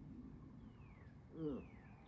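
A bird calling twice, each a thin whistle falling in pitch, over a faint low outdoor rumble. About halfway through, a man gives a short 'mm' after a sip of coffee, the loudest sound here.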